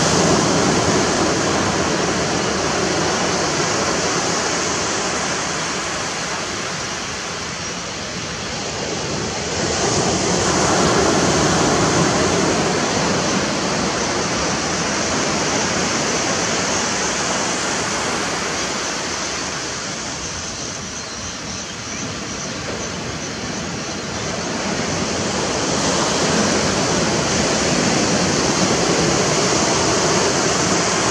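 Surf washing onto a sandy beach: a steady rush of small waves that swells and eases every ten seconds or so.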